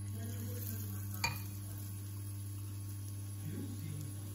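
Drops of tempura batter sizzling faintly in shallow hot vegetable oil in a frying pan. These are test drops, and the oil is almost hot enough. A single sharp click comes about a second in, over a steady low hum.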